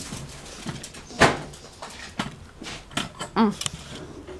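A few knocks and clatters of things being handled, the loudest about a second in, with a short pitched vocal sound near the end.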